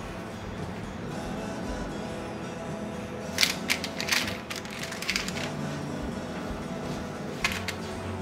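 Soft background music with short crinkling noises from the parchment paper and plastic wrap as cookies are handled: a cluster of crackles about three to four seconds in and another pair near the end.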